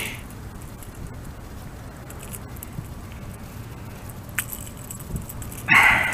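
Steady low rush of river water flowing, with a sharp click about four seconds in and a short louder burst of noise near the end.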